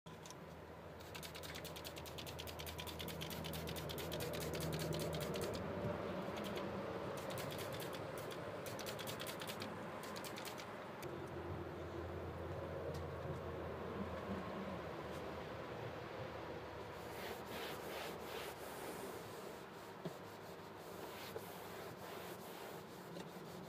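Cloth wiping and rubbing across a car's vinyl dashboard: a steady, scratchy rubbing made of many fine rapid ticks. A low hum comes and goes underneath.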